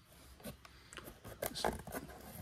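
Faint crinkling and scraping as hands work a shrink-wrapped cardboard trading-card box open, the plastic wrap rustling and the cardboard lid flap rubbing as it is pried up. The small crackles come in a loose cluster, busier in the second second.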